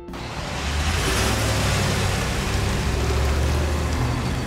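2019 Ram 3500 pickup with its 6.4-litre Hemi V8 towing a toy-hauler travel trailer past at low speed: steady low engine sound with tyre and road noise. It comes in suddenly and holds steady.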